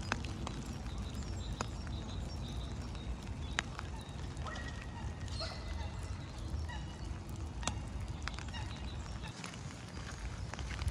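Outdoor park ambience on a walk beside a lake: a steady low rumble with a few scattered sharp clicks, and short bird calls about five seconds in.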